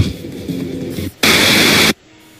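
Played-back video soundtrack: a second of cartoon sound, then a loud burst of TV-static hiss lasting just over half a second that cuts off suddenly, the kind of static used as a transition between clips in a compilation.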